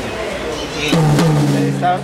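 A rack tom struck once with a drumstick and left to ring open, with no dampening gel on the head yet. It gives a low, sustained tone that dips slightly in pitch just after the hit and rings on for about a second.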